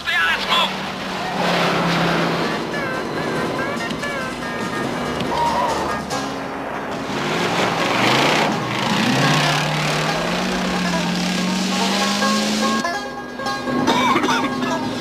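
Several race cars' engines running hard on a dirt track, with one engine's pitch climbing steadily in the second half, all under a TV music score.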